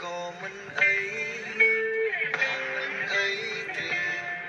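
A pop song playing, in short melodic phrases.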